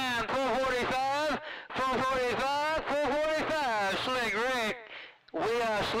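A person talking over a radio receiver, words not clearly made out, with short pauses about a second and a half in and again near the end.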